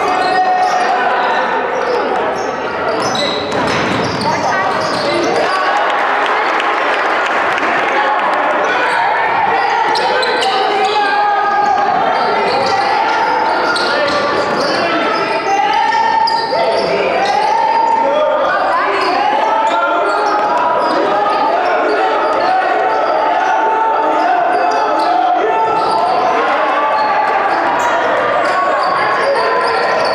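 Many overlapping voices talking at once in a school gym, with basketballs bouncing on the hardwood floor.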